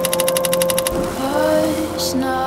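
Rapid, even mechanical clicking, about twelve clicks a second, like a film projector running, over a long held musical note. The clicking stops about a second in, and a voice starts singing.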